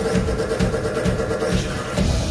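Live electro-industrial (EBM) band music through a concert PA, heard from the crowd: a held synth note over a steady, pulsing kick-drum beat.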